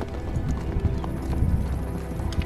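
Horse's hooves clopping at a walk on dirt ground, soft thuds about every half second, over background music.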